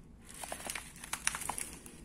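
Foil coffee bags of whole beans crinkling and crackling as they are handled. The run of quick, irregular crackles starts about a third of a second in.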